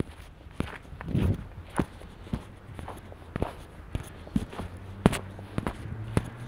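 Footsteps on a snow-covered sidewalk at a brisk walk, about two steps a second. A low steady hum comes in during the second half.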